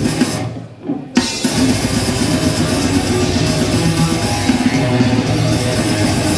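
Live death metal band playing: distorted electric guitars and a drum kit. The band breaks off briefly about half a second in and comes back in together just after one second.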